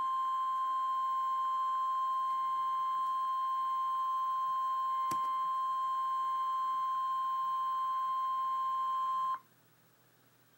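Emergency Alert System attention tone: a single steady tone of about 1050 Hz, the NOAA Weather Radio warning alarm, held for about ten seconds and cutting off abruptly near the end. It signals that a severe thunderstorm warning is about to be read.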